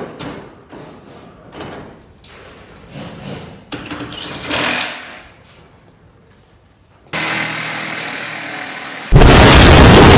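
Knocks and rattles of mechanics swapping wheels on a Formula 4 car, then about seven seconds in a sudden loud rush of noise. About nine seconds in comes a very loud explosion sound effect, at full level to the end.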